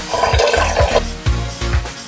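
Tap water pouring into a stainless steel pot for about the first second, over electronic dance music with a steady beat.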